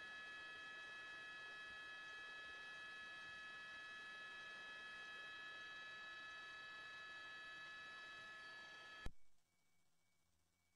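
Faint steady hiss with several high, steady electronic tones, like an open, idle audio line. About nine seconds in, a click and the line cuts out to near silence.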